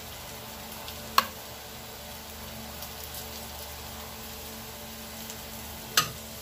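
A steady low hiss with a faint hum, broken once about a second in by a sharp click of a metal spoon against the glass baking dish.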